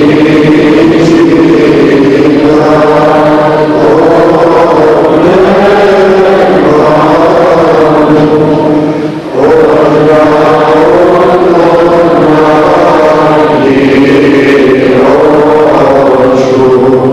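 Voices singing a Greek Orthodox chant in long held phrases over a steady low drone note, with a brief break for breath about nine seconds in.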